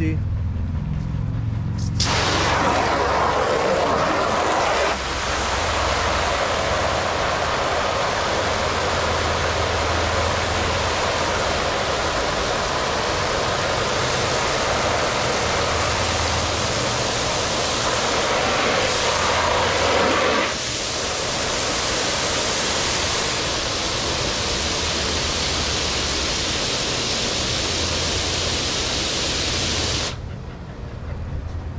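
Garden hose with a spray nozzle filling a plastic kiddie pool: a loud, steady hiss of spraying water that starts about two seconds in and shifts in strength around five and twenty seconds.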